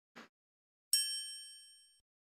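Logo-intro sound effect: a short soft pop, then about a second in a bright bell-like ding that rings on and fades away.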